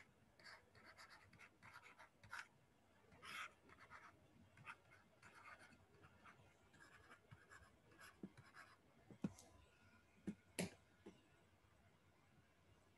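Faint scratching of a pen writing in many short strokes, with a few sharp taps a little past the middle and towards the end that are the loudest sounds.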